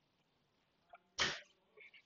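A single short, sharp breathy burst from the presenter close to her headset microphone, about a second in, set in otherwise near-silent room tone.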